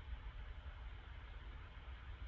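Faint, steady background hiss with a low hum: room tone on the recording microphone.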